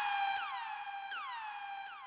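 Synthesized intro effect: a bright electronic tone that swoops down in pitch and settles, repeated three times about three-quarters of a second apart, each fainter than the last.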